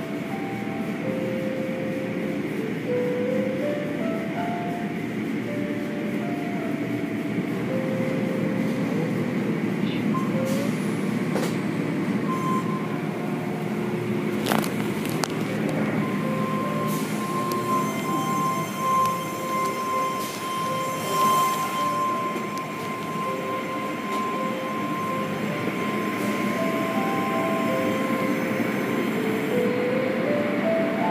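Automatic car wash running over the car, heard from inside it: cloth brushes scrubbing and water spraying and running down the glass, over a steady mechanical rumble. A steady high tone joins about halfway through and holds for some ten seconds.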